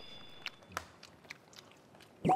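Quiet eating sounds: people chewing, with a few faint sharp clicks and taps of chopsticks and plastic containers.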